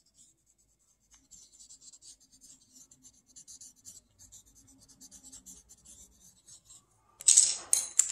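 Coloured pencil scribbling on paper in rapid, soft, short strokes, shading in a drawing. Near the end comes a louder, brief clatter as the pencil is put down among the others.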